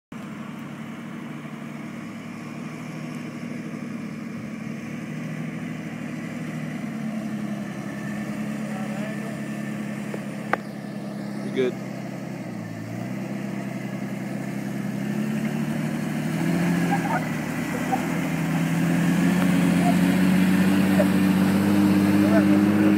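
Jeep Cherokee XJ engine pulling at low revs as the truck crawls up a steep slickrock face, growing steadily louder; its pitch dips briefly about halfway through, then climbs again. A single sharp click sounds a little before the middle.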